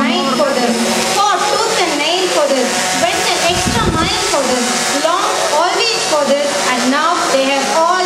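A woman speaking steadily into a microphone through a public-address system, over a steady whirring background noise, with a brief low rumble about four seconds in.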